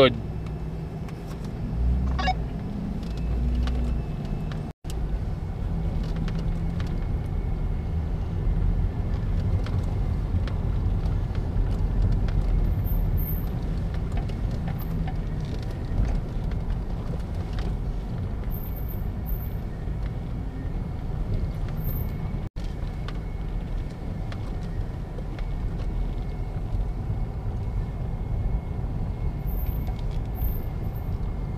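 Pickup truck driving along a gravel trail: a steady low rumble of engine and tyres, cutting out briefly twice.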